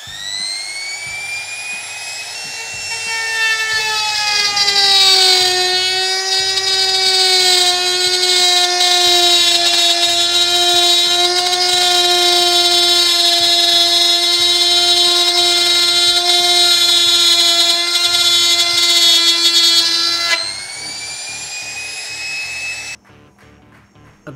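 Dongcheng DMP02-6 wood trimmer (compact router) starting up with a rising whine. Its pitch drops as the bit bites into plywood, and it runs under load with a loud, steady high whine. Near the end the load comes off and the motor is switched off.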